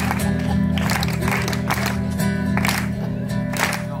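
Music for a tammurriata: a steady held low chord with hand claps keeping the beat, about two a second.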